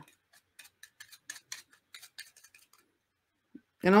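Faint rapid ticks of toothbrush bristles flicking off the edge of a scrap of paper as it is pulled along them, spreading watercolour paint onto the bristle tips. The ticks come about six a second and stop a little before three seconds in.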